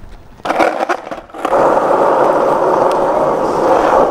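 Lou mini electric skateboard's small wheels rolling over rough asphalt. A few clattering knocks come as it gets going, then a steady loud rolling from about a second and a half in: the board still runs after the crash tests.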